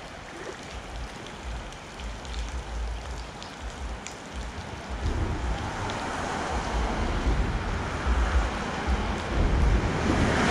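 Flowing creek water and rain falling on its surface, with an irregular low rumble underneath that grows louder about halfway through.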